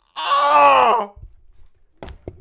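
A man's loud, wordless yell of shock, lasting about a second, its pitch sliding down as it ends.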